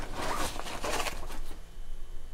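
Rustling and scraping of a nylon drawstring bag and the plastic-packaged items inside it as a hand rummages through it, easing off after about a second and a half.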